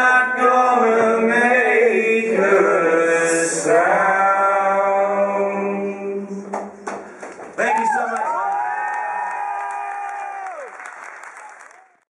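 A man singing the last held lines of a folk song over an acoustic guitar, stopping about halfway through. Then come a few sharp claps and an audience's clapping, with one long cheering whoop that rises, holds and falls away.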